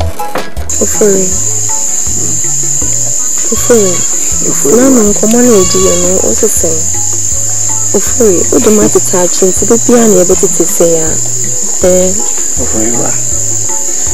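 A steady high-pitched insect trill starts just under a second in and holds unbroken, under voices and a low, stepping bass line of background music.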